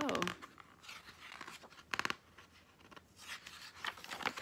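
Soft paper rustling and crinkling from a hardcover picture book being handled, with a sharper crackle about halfway through and a page being turned near the end.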